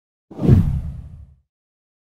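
A single deep whoosh sound effect that swells quickly about a third of a second in, then dies away by about a second and a half.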